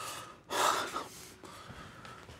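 A man's loud, breathy gasp about half a second in, lasting about half a second, after a softer breath at the start.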